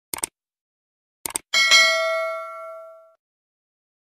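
Subscribe-button animation sound effects: a quick double mouse click, another double click about a second later, then a bright bell ding that rings out and fades over about a second and a half.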